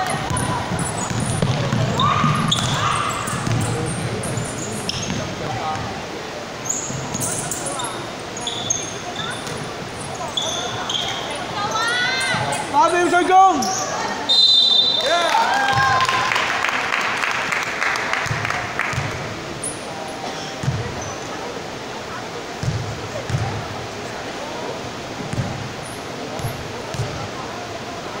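Basketball game on a wooden gym floor: a ball bouncing and thudding, sneakers squeaking, and players' voices ringing in a large hall. A short, high whistle blast sounds about halfway through.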